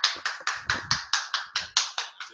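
Hands clapping in a quick, steady rhythm, about six claps a second: applause welcoming a speaker to the pulpit.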